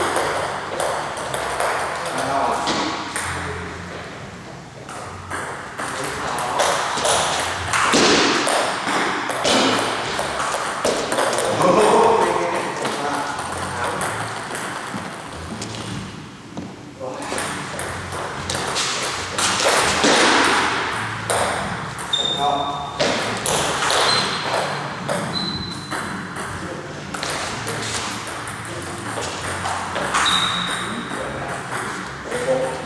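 Table tennis rallies: the ball clicks sharply off the bats and the table in quick runs, with short breaks between points.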